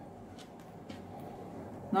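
Faint handling of a sewn piece of fabric in the hands: soft rustling with a few light ticks.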